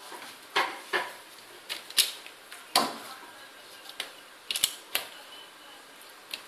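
A series of short, sharp plastic clicks and knocks, irregularly spaced, from a mains plug and a plug-in adapter being handled and pushed into a wall switchboard socket.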